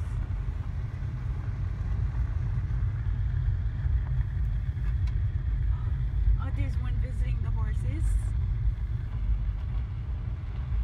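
Steady low rumble of a vehicle on the move, with faint voices talking briefly about two-thirds of the way in.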